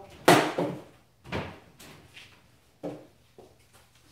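Plastic picnic cooler, used as a mash tun, set down on a plywood shelf of a wooden brew stand: a loud knock about a quarter second in, a second thump about a second in, then a few lighter knocks.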